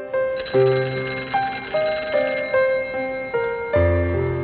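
Background music: a slow melody of held notes, with a bright, bell-like ringing over it for the first half.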